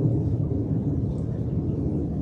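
A steady low rumble of background noise, with no speech and no distinct knocks.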